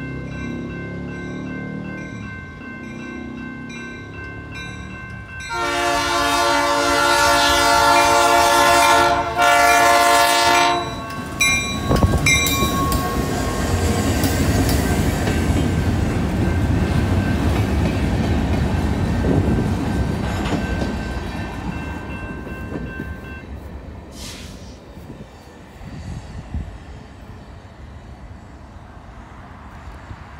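Grade-crossing bell ringing, then the locomotive's P3 air horn sounds a long chord about five seconds in, with a brief break, followed by two short toots. The locomotive and loaded freight cars then rumble and clatter past on the rails while the crossing bell keeps ringing until about two-thirds through. The train noise fades as it pulls away.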